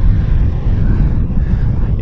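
Honda NC750X DCT motorcycle ridden slowly along a street, heard from the rider's camera: a steady low rumble of its parallel-twin engine mixed with wind noise at the microphone.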